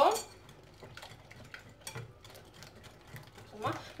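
Fork stirring a liquid egg-and-cream mixture in a bowl: faint, irregular clicks and scrapes of the tines against the bowl.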